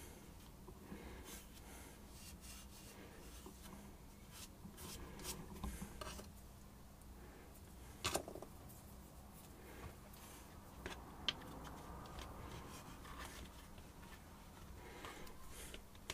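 Fingers rubbing and pressing plastiline, an oil-based modelling clay, into the seams of a sculpted form: faint scuffing and smearing, with a few light clicks. A faint steady hum runs underneath.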